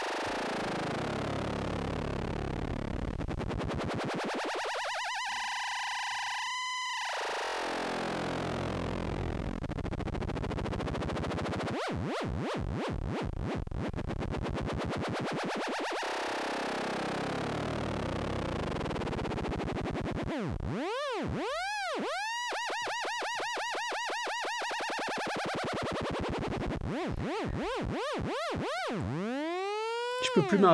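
Make Noise Maths cycling at audio rate as a synthesizer oscillator, wave-folded, making 'piou-piou' laser-like pitch sweeps. Slow swooping falls and rises in pitch give way to quicker bouncing chirps in the last third.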